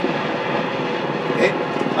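Steady rushing background noise with no rhythm or tone, and a man briefly saying "okay" near the end.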